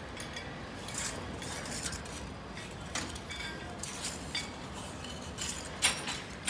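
Scattered metal clinks and knocks of crane rigging hardware (chains, hooks and shackles) against steel, a sharp strike every second or so, the loudest near the end.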